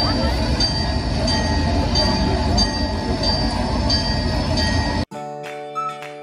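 Loud, steady rushing and rumbling sound effect from a street show's sound system, with a high tone pulsing about every two-thirds of a second. It cuts off abruptly about five seconds in and flute-like music begins.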